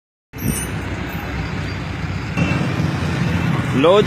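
Steady street traffic of motorcycles and motorcycle rickshaws, with a low engine hum close by.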